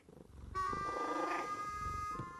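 A cartoon cat sound effect: a sleeping cat purring with a rapid low rattle that starts about half a second in, over a few soft held tones.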